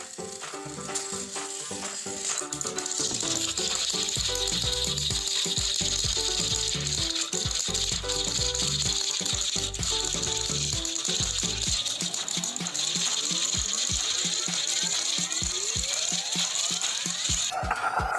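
Small battery-powered toy train motors and plastic gearboxes whirring and grinding steadily as the engines run on plastic track, over background music. The whirring stops shortly before the end.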